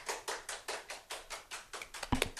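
Hand clapping from one or two people: quick, even claps at about six or seven a second.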